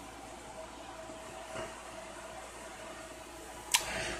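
Steady low room hum with a faint constant tone, typical of a window air conditioner running. A single sharp click near the end.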